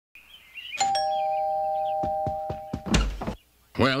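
Two-tone doorbell chime: a higher ding then a lower dong, both ringing on together for about two seconds. A few soft taps and a low thump follow near the end.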